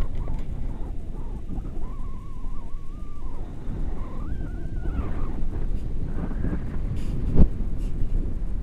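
Wind buffeting the camera microphone in flight under a paraglider, a steady low rumble. A wavering high tone sounds twice in the middle, and a short thump comes near the end.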